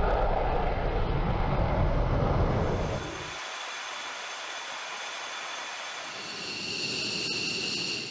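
F-15 fighter's twin Pratt & Whitney jet engines running at full afterburner power on takeoff: a loud, deep rumbling noise that cuts off about three seconds in. After that a quieter steady hiss remains, and from about six seconds in crickets chirp in steady high notes.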